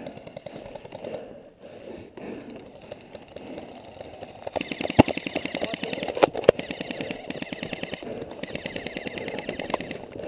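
Airsoft rifle firing on full auto: a rapid, even clatter of shots starting about halfway through, with a short break near the end before another burst. A few louder sharp cracks stand out in the first burst.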